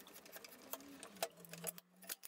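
Faint, irregular clicks and creaks of a thread tap being worked into a hole in a beech block under a drill press, starting the threads in the wood.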